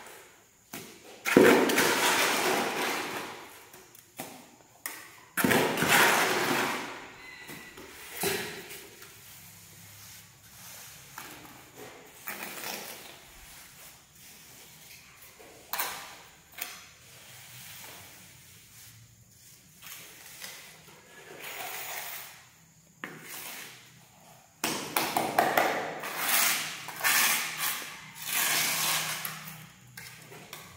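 Steel hand trowel scraping and spreading wet cement mortar in a floor bed, in three spells of a few seconds each, with lighter taps and scrapes between.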